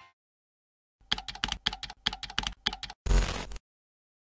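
Keyboard typing sound effect: a quick run of about ten key clicks over two seconds, then one louder, longer keystroke.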